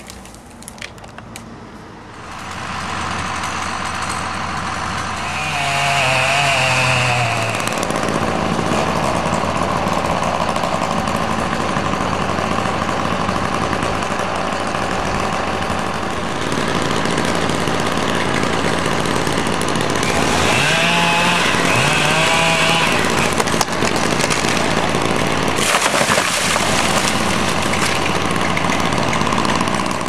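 Petrol chainsaw running steadily at high revs, its pitch dipping and recovering under load around six and again around twenty-one seconds in as it cuts.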